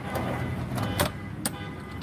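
Steel cargo drawer in a police SUV pushed shut on its ball-bearing slides, with two sharp metallic clicks, the louder one about a second in, as it closes and latches. A steady low vehicle hum runs underneath.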